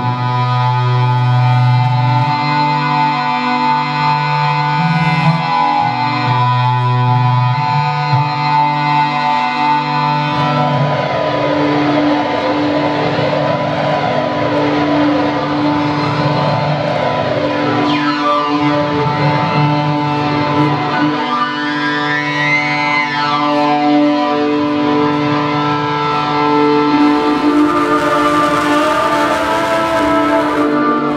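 Live experimental electronic sound-art performance: layered sustained drones run through effects, with many swooping pitch glides criss-crossing from about ten seconds in.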